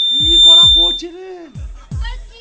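Stage music: four deep drum hits, each dropping sharply in pitch, two close together near the start and two near the end. A high, steady whistle-like tone runs under them and stops about a second in.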